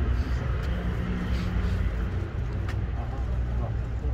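A motor vehicle's engine idling, a steady low hum.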